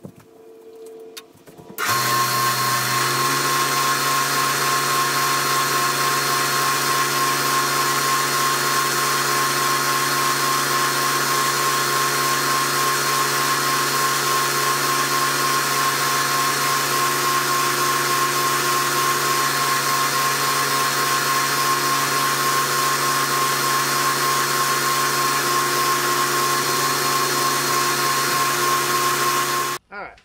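Shopsmith lathe running at a steady speed, spinning a bowl while a cloth buffs wax onto it: a constant motor hum with a steady whine. It starts about two seconds in and cuts off just before the end.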